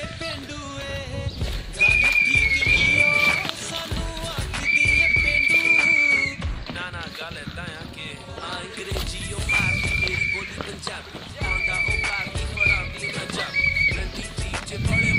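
A whistle blown to call cattle along: long steady high notes about a second and a half each, twice, then several shorter notes, the cue the cows are trained to follow to the yards.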